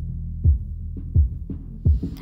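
Instrumental backing track in a gap between sung lines: deep kick-drum thumps about every 0.7 s over a sustained low bass.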